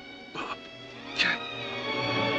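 Orchestral film score with held strings, growing louder near the end, broken by two short, strained cries or gasps from a voice, about half a second in and again a little after a second.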